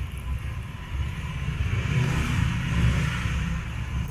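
A motor vehicle passing on the street, its engine and road noise building to a peak about two to three seconds in and then easing off.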